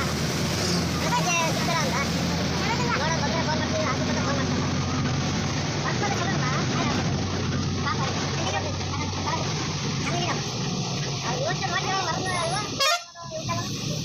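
Bus engine running steadily as heard from inside the moving bus, with passengers' voices talking over it. Near the end there is a sharp click and the sound drops out for a moment.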